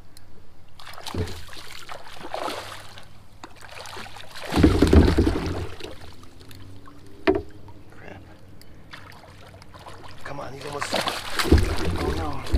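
Water splashing and sloshing as a big hooked smallmouth bass thrashes at the surface beside a kayak and is scooped into a landing net, with a single sharp knock a little past the middle.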